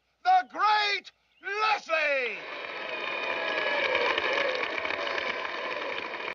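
A man's loud, drawn-out shouted announcement for about the first two seconds, then a large crowd cheering, swelling a little.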